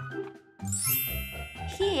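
A bright chime sound effect rings out about a third of the way in, a quiz's answer-reveal cue, over light background music with a steady beat.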